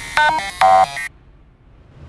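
Dubstep track breaking down: about a second of short synth lead notes stepping in pitch, with the bass gone, cuts off to near silence. A faint noise swell starts rising near the end.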